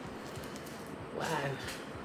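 Faint steady room hiss, with a softly spoken "wow" a little over a second in. The paint stream itself makes no sound that can be picked out.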